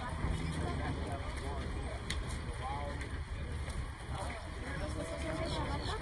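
Indistinct voices of people talking at a distance over a steady low rumble.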